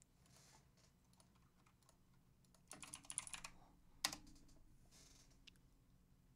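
Typing on a computer keyboard: faint scattered keystrokes, with a quick flurry of louder clicks about three seconds in and a single sharp click about a second later.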